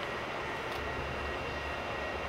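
Steady hum and hiss of a large museum hangar hall, with a thin high whistle held on one pitch and a low rumble that comes up about halfway in.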